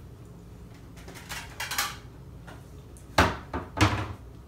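Dishes clattering as a plate is fetched: light scrapes and clinks, then two sharp knocks about half a second apart near the end.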